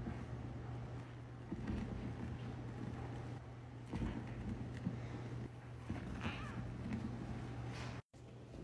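Tap water pouring into a stainless steel sink full of soapy foam, a muffled, irregular gurgle over a steady low hum.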